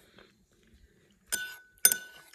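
Metal spoon clinking twice against a ceramic bowl, the first clink about a second and a half in and a sharper one near the end, each leaving a short ring.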